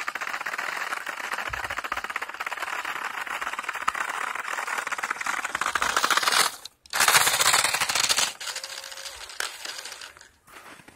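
Remote-control car with screw-studded tires driving over packed snow and ice: a fast, dense rattling whir of motor, gears and tires. It cuts out for a moment about two-thirds of the way through, comes back louder for about a second as the car runs close, then fades toward the end.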